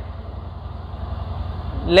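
Steady low background hum under a break in a man's speech. His voice starts again right at the end.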